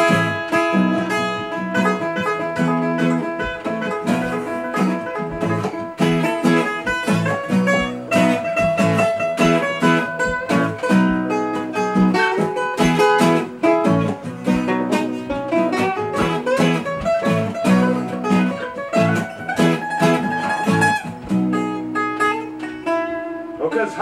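Acoustic guitar strumming chords while a second plucked string instrument picks a melody over it: an instrumental break in the song.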